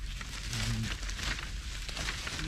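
Dry sticks knocking and scraping against each other, with dry leaf litter crackling, as the wood is gathered by hand into a pile.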